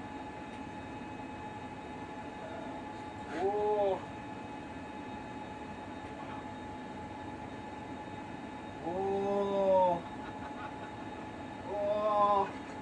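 Steady hum of the space station's cabin fans and equipment, broken twice by a drawn-out vocal exclamation that rises then falls in pitch: a short one about three and a half seconds in and a longer, louder one near nine seconds.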